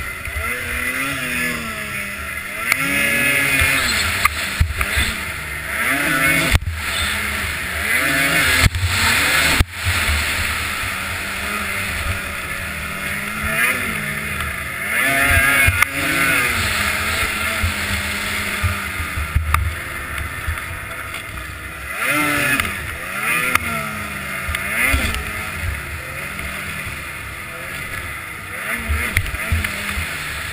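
Race snowmobile's two-stroke engine at full race pace, its pitch rising and falling again and again as the throttle is opened and closed through the course, with wind rushing over the helmet-camera microphone.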